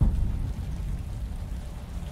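Steady rain with a low rumble on a film trailer's soundtrack, cutting in suddenly and holding even throughout.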